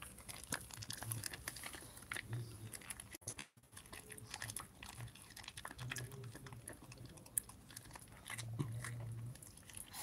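A dog crunching and chewing a hard treat taken from a hand: a string of small irregular crunches and clicks, with a brief gap a few seconds in.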